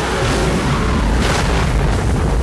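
A loud, continuous explosion rumble with deep low boom, mixed with music.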